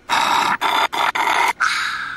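Loud slurping of chocolate smoothie through a drinking straw from a small drink carton, in several long sucks broken by short pauses.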